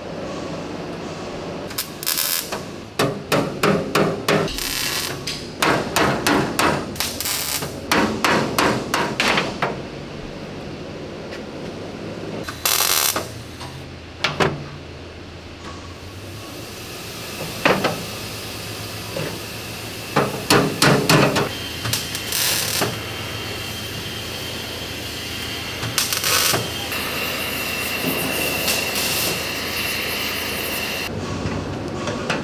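Hammer blows on sheet steel, panel beating, in quick runs of several strikes a second broken by pauses, with a few single blows in the second half.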